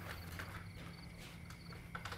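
Faint ambience: a high-pitched insect chirping in short repeated trills over a steady low hum, with a few light knocks like footsteps.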